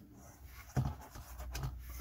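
Soft rubbing and handling noises from a compact camera and its plastic lens adapter tube, as the tube is pulled off the camera and the camera is set down on a tabletop.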